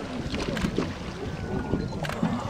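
Wind on the microphone and the water around an inflatable Zodiac boat, a steady noisy background.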